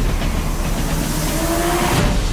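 Car engine revving hard with road and tyre noise as a car drives fast toward the camera, a slowly rising tone in the second half.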